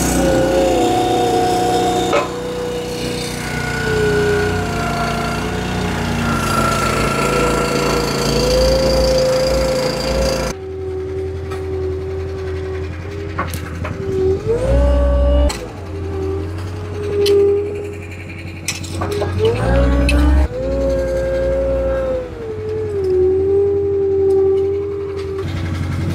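Caterpillar 257B compact track loader's diesel engine running, its pitch rising and falling as it is throttled, with two short revs in the second half.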